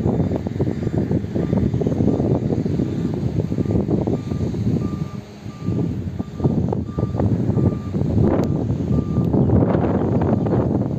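Wind buffeting the microphone in uneven gusts, with a faint high beep repeating at even intervals, a little faster than once a second, in the background.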